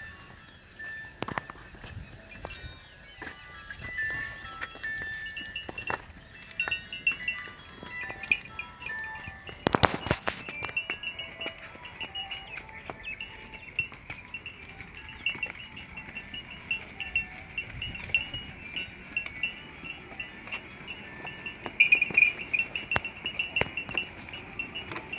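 Small metal bells clinking irregularly, with a sharp knock about ten seconds in.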